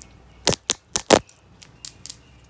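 A quick run of sharp taps and clicks, about seven in under two seconds, with the two loudest near the middle. They come from long acrylic nails and fingertips knocking against the phone.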